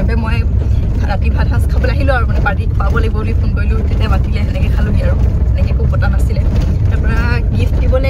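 Steady low rumble of a car's engine and tyres heard inside the cabin while the car is driving, under a woman talking.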